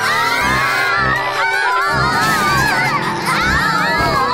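A group of young children's voices crying and wailing together, many overlapping at once with wavering pitch.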